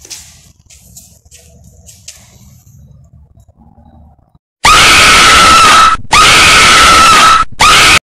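Faint handling noise, then about four and a half seconds in a sudden, extremely loud, distorted scream cuts in, in three blasts with two short breaks: a jump-scare screamer sound effect.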